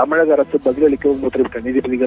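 A man speaking Tamil over a phone line, the voice thin and cut off above the middle range, with music faintly underneath.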